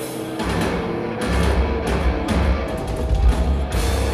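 Heavy metal band playing live: held notes give way to drums and distorted guitars kicking in about half a second in, with pounding low drums from about a second in.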